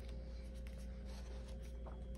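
Paper pages of a paperback coloring book being turned by hand: soft rustles and a few light ticks over a steady low hum.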